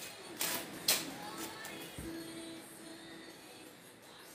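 A deck of tarot cards shuffled by hand, with two soft rustles of the cards in the first second, over faint background music.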